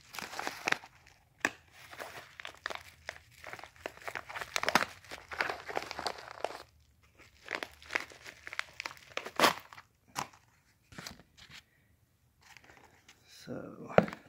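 Plastic mailing envelope crinkling and rustling in irregular bursts as it is handled and opened and a package is pulled out of it, with one sharper crackle about nine and a half seconds in.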